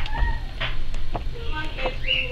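Sheets of a scrapbook paper pad being flipped and handled, with two brief clicks, plus a few short pitched calls in the background.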